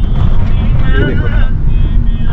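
Road and engine rumble inside a moving taxi's cabin: a steady, loud low rumble with wind noise on the microphone, and a brief voice about a second in.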